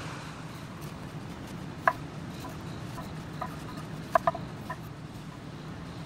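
A few short, soft taps of a knife on a wooden cutting board as strawberries are sliced: a single tap about two seconds in, a few fainter ones after it, and a quick pair a little after four seconds. All of it sits over a steady low room hiss.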